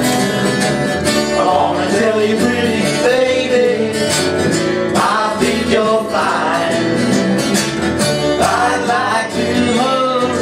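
Live acoustic band music: acoustic guitar strumming and an acoustic bass guitar under several voices singing together in harmony.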